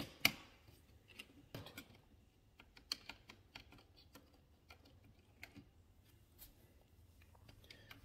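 Faint, scattered clicks and taps of a small screwdriver working a terminal screw on a plastic thermostat wall plate, loosening a wire from it; the loudest click comes just at the start.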